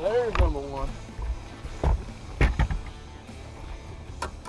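A bass being netted from the water and lifted onto a boat deck: a short yell in the first second, then a few sharp knocks about two seconds in as the net and fish land on the deck.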